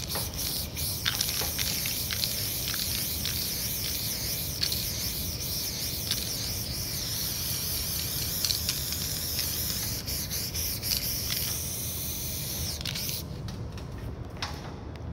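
Aerosol spray paint can hissing steadily as paint is sprayed onto a wall in sweeping passes, with a few light clicks. The hiss stops about a second before the end.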